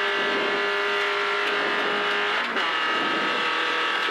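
Renault Clio rally car engine at full throttle, heard from inside the cabin, running at steady high revs with a gear change about two and a half seconds in.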